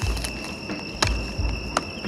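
Night insects, likely crickets, trilling steadily at two high pitches. Under them come low thuds of handling and movement in grass, with two sharp clicks, one about a second in and one near the end.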